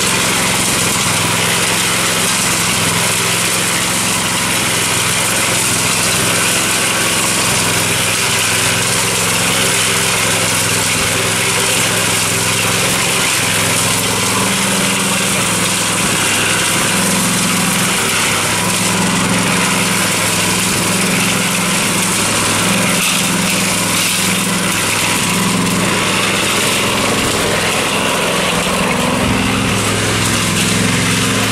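Small single-cylinder gasoline engine of a portable cement mixer running steadily as the drum turns.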